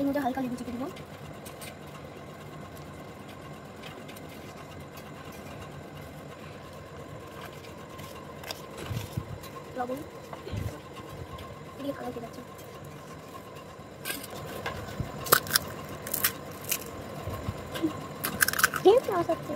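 Steady low background hum with faint distant voices, then from about two-thirds of the way through a series of sharp clicks and taps of utensils against a stainless steel bowl as ingredients are added and mixed.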